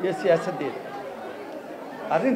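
A man speaking Somali into microphones, louder in the first half-second and quieter after.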